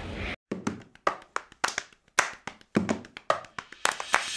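A quick, uneven run of light clicks or taps, about four or five a second, with silence between them.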